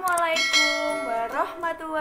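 Subscribe-button animation sound effect: a mouse click followed by a notification-bell ding, over a woman's voice.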